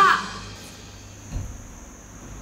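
A woman's voice ends a word in the first moment, then quiet room tone with one soft, low thump about one and a half seconds in.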